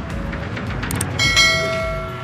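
A bell chime rings out suddenly about a second in, a cluster of clear ringing tones that holds for about a second and a half before fading.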